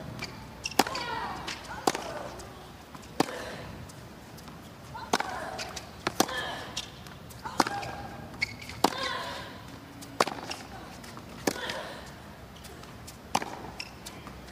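Tennis ball struck by rackets in a baseline rally: about ten sharp hits, one every second or so.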